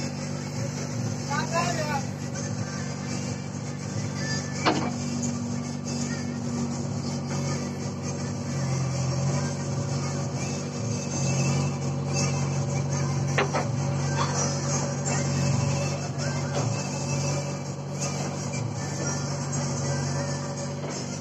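JCB backhoe loader's diesel engine running steadily while the hydraulic digging arm works the bucket in and out of a trench, the engine note shifting a few times as it takes load, about nine and again about eleven seconds in.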